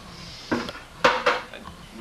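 Hard objects clattering and knocking in a small room: one knock about half a second in, then two sharper clanks around a second in.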